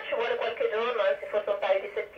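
A voice received over FM radio on a Yaesu transceiver tuned to 145.800 MHz, the ISS downlink, heard from the radio's loudspeaker as narrow, band-limited speech.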